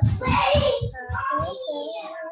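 A child's voice singing a few drawn-out, wavering notes.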